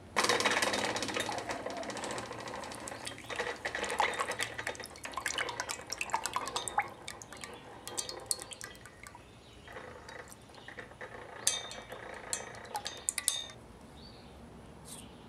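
Hot steel blade plunged into a can of quench water: a sudden loud sizzle and crackle of boiling water that slowly dies away as the blade is held and moved in the water. A few sharp clicks near the end.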